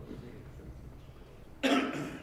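A single short, loud cough about a second and a half in, over faint room murmur.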